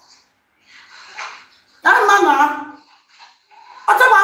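A woman's voice: a faint breathy sigh, then a loud drawn-out vocal cry that falls in pitch over less than a second.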